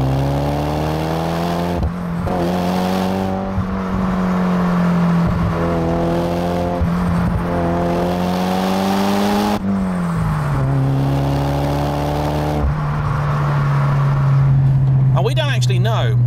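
1996 Toyota Celica GT-Four's turbocharged 2.0-litre four-cylinder pulling hard through the gears, heard from outside the car with road noise: the engine note climbs several times, breaking briefly at each gear change. About ten seconds in it drops sharply, climbs once more, then holds steady.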